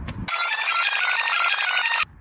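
A bright, bell-like jingle of many quick ringing notes with no low end. It starts about a third of a second in and cuts off abruptly, like an edited-in transition sound.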